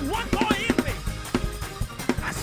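Live gospel band playing a praise-break groove: drum-kit hits with bass guitar underneath and pitched lines bending up and down over the top.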